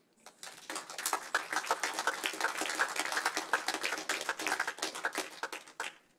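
Audience applauding: a dense patter of many hand claps that builds over the first second and stops suddenly near the end.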